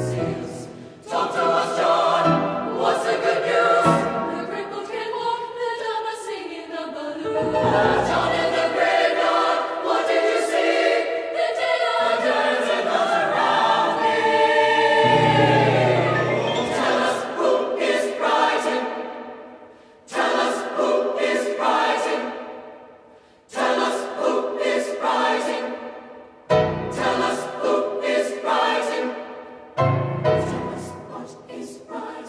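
Mixed-voice youth choir singing a traditional American gospel song. Long sustained chords give way, about two-thirds of the way in, to short, clipped phrases with brief breaks between them.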